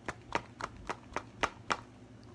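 A can of Copenhagen Southern Blend dip being packed: about seven sharp, evenly spaced taps, three or four a second, as the can is snapped against the fingers to pack the tobacco down to the bottom.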